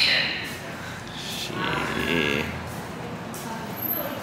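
A wavering, bleat-like vocal sound with a quavering pitch, about one and a half seconds in, lasting about a second.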